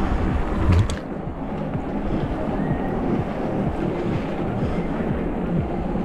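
Steady wind rush on the camera microphone of an electric mountain bike ride, with a heavier low buffeting in the first second, and music faintly underneath.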